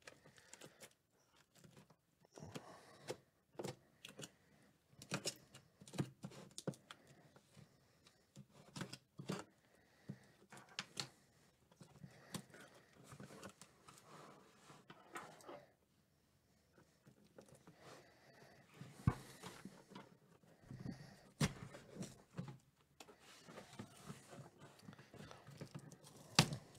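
A utility knife cutting through packing tape and cardboard on a taped-up box, with irregular faint clicks, scrapes and short tearing sounds as the box is turned and worked open.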